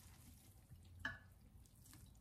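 Near silence with faint, wet handling sounds of fermenting kimchi being pressed down into a glass jar with fingers and a fork, with one brief soft sound about a second in.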